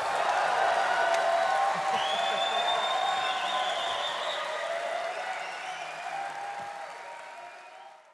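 Large audience applauding and cheering, with one long, high whistle from the crowd about two seconds in; the applause fades out steadily toward the end.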